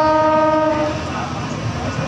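Train horn sounding one steady note that cuts off about a second in, over the continuous rumble of the carriage running on the track.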